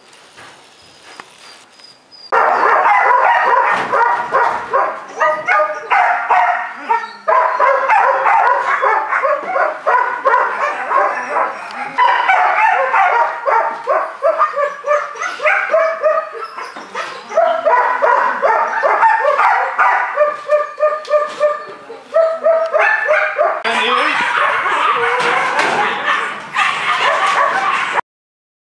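Belgian Malinois puppy barking and yipping continuously, loud from about two seconds in, during tug and bite play.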